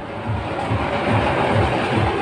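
Machinery running with a steady low thud about four to five times a second under a hiss that grows louder in the middle.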